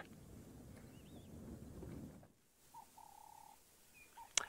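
Near silence: faint background hiss that drops out suddenly about two seconds in, with a faint short wavering chirp about a second in and a brief steady tone near the three-second mark.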